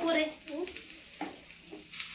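Vegetable curry being stirred in a steel frying pan on a gas stove, sizzling, with a few short scrapes of the utensil against the pan.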